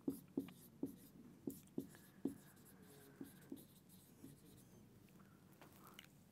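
Marker pen writing on a whiteboard: a quick run of short strokes and taps over the first three seconds or so, then only faint sounds.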